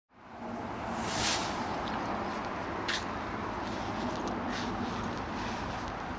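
Steady outdoor background noise picked up by the camera microphone, with a brief louder rush about a second in and a sharp click near three seconds.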